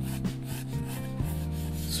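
Graphite of a mechanical pencil drawing across paper in sketching strokes, over soft background music with steady held tones.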